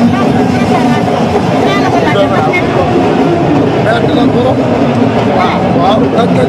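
Speech: a man talking into the microphones, over steady background crowd noise.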